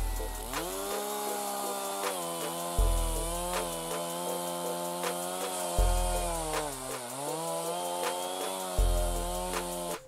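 A small engine running steadily, its pitch dipping briefly twice, over background music with a deep bass note about every three seconds.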